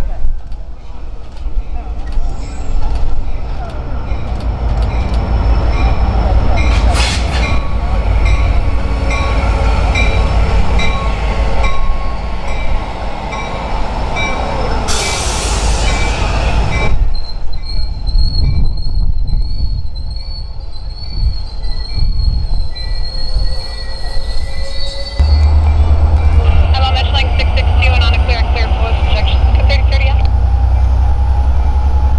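Metrolink commuter train with bilevel coaches rolling past close by: steady rumble with wheels clicking over the rail joints. A short loud hiss comes about 15 seconds in, then high wavering wheel squeal. A heavier, deeper rumble sets in near the end.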